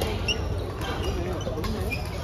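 Badminton play in a large sports hall: a couple of sharp racket strikes on the shuttlecock and short high squeaks of court shoes on the floor, over the chatter of players and spectators.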